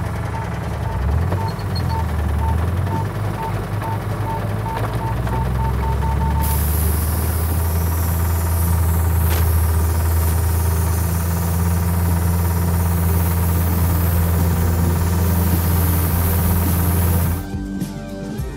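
John Deere Gator utility vehicle's engine running steadily, with a short high beep repeating about four times a second for the first six seconds or so, and a steady hiss joining after that. Near the end the engine sound cuts off and guitar music begins.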